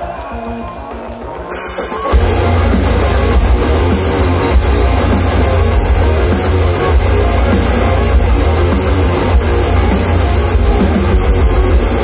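Heavy metal band playing live: a quieter pulsing intro with stepped keyboard-like notes, then about two seconds in the distorted guitars and drums come in at full volume.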